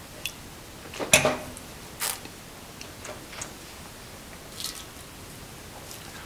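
A wine taster sipping red wine from a glass: a few short slurping and sucking mouth sounds, the loudest about a second in, another about two seconds in, and fainter ones later.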